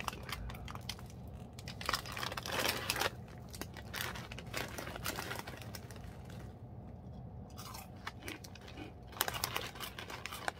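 Crunchy snack chips being bitten and chewed close to the microphone, in irregular crisp bursts.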